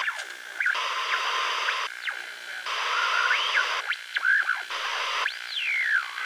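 Bursts of radio-like static hiss, each about a second long, with whistling tones sweeping up and down between them, like a radio being tuned between stations.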